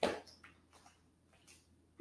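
Near silence: room tone, after one brief soft click right at the start.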